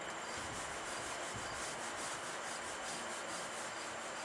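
Whiteboard eraser rubbing across the board in quick back-and-forth strokes, about three to four a second, wiping off writing. Crickets chirp faintly in the background.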